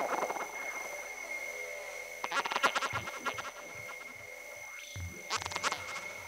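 Sparse, quiet breakdown of a 1990s Goa trance track: two steady high synth tones held throughout. Over them come two bursts of rattling, croaky synth effects, about two seconds in and again near the end, with a few faint low pulses and no full beat.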